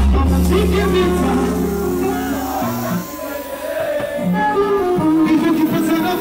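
Live Bongo Flava concert music: a male singer singing into a microphone over a loud backing track. A deep bass line drops out about halfway through.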